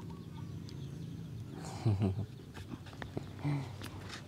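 A short, low, grunted "yeah" about two seconds in, falling in pitch, with a smaller low sound near the end, over a faint steady hum.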